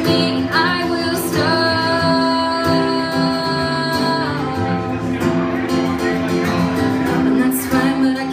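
A woman singing to her own acoustic guitar accompaniment. About a second and a half in she holds one long note for nearly three seconds.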